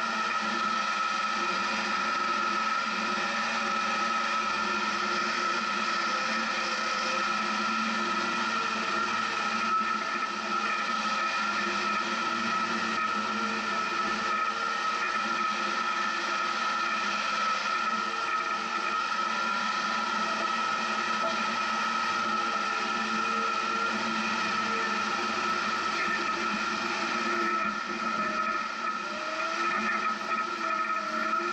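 Off-road 4x4 vehicle's engine running steadily as it drives slowly along a rough dirt trail. The engine note rises and falls a little, with a constant high whine over it.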